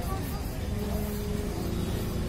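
Steady low rumble of road traffic with a faint steady hum over it, and indistinct voices in the background.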